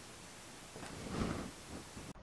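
Quiet room hiss with a soft, brief rustle of handling about a second in.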